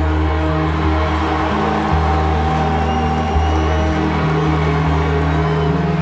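Live band music: a slow, sustained ambient drone with long-held deep bass notes that change pitch a few times, and held keyboard tones above, without drums.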